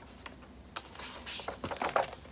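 Quick clicks and taps with a brief scratchy rustle between them, from hands working with pen, paper and stationery on a desk. The clicks come in two clusters, the second near the end and the loudest.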